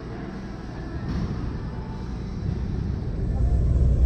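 Gym room sound: a steady low rumble with faint, indistinct voices, growing louder shortly before the end.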